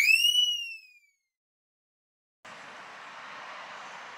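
A whistle-like sound effect for a logo card, one pitched swoop that rises sharply and then slowly falls away, fading out within the first second. After a second or so of silence, a steady faint outdoor background hiss begins.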